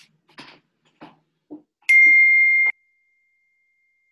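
A single loud electronic beep, one steady high tone held for nearly a second and then cut off sharply, after a few faint knocks.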